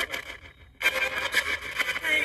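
Handheld spirit box sweeping through radio stations: choppy, rasping static with broken scraps of radio sound. It drops out briefly about half a second in, then resumes.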